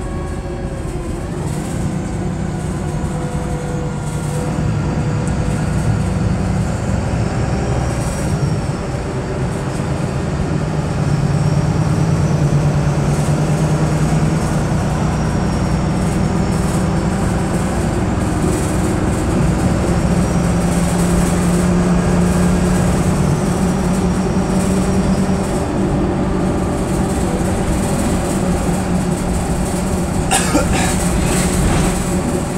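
VDL SB200 bus with Wrights Pulsar body heard from inside the saloon while under way: a steady engine and road noise whose low note shifts in pitch and grows louder about ten seconds in, with a faint high whine rising and falling a few times.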